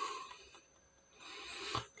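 Faint rustle of a plastic-sleeved comic book being handled and turned, with a short silent gap in the middle.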